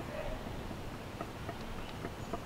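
Motor oil being poured from a jug through a plastic funnel into an engine's filler neck: a faint, steady trickle with a few soft ticks.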